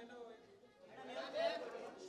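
People talking: speech with background chatter, loudest in the second half.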